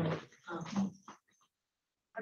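A person's voice coming through a video call, heard as a few short, clipped fragments of speech in the first second, then silence.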